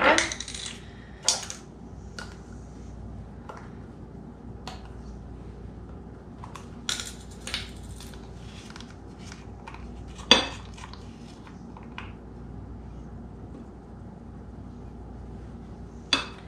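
Light clicks and taps of a spice jar, its shaker insert and a measuring spoon being handled on a stone countertop, scattered through, the sharpest about ten seconds in. A low steady hum lies underneath.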